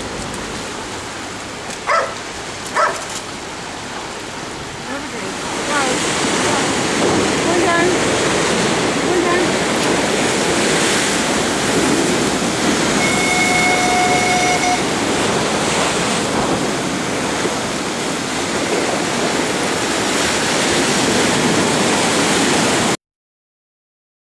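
Sea waves breaking and surging against a stone sea wall and steps, with wind blowing on the microphone; the surf noise grows much louder about five seconds in and stays loud until it cuts off near the end. Two short sharp sounds come about two and three seconds in.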